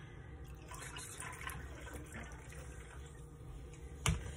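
Ginger beer poured from a small glass bottle into a glass over ice: a faint liquid pour.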